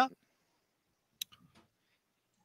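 A spoken word ending, then near silence broken once by a short sharp click a little past a second in, with a faint softer sound just after it.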